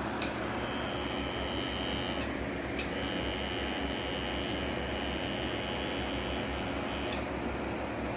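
Tattoo machine running with a steady high whine. It stops for about half a second a little after two seconds in and cuts off about a second before the end, with a click at each stop and start.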